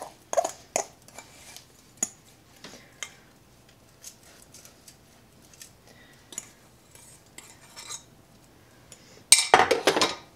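A metal spoon scraping and tapping against a glass bowl as buttered Oreo crumbs are knocked out into a springform pan, in scattered small clinks and scrapes. Near the end comes a louder clatter as the bowl is set down.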